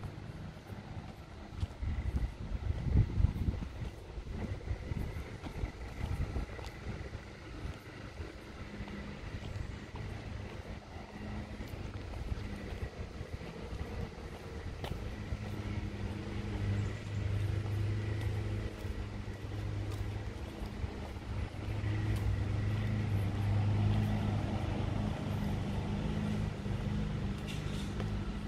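Steady low motor hum that grows louder in the second half, with wind buffeting the microphone in the first few seconds.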